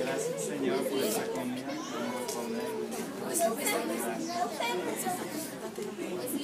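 Several voices talking over one another, indistinct chatter of adults and children.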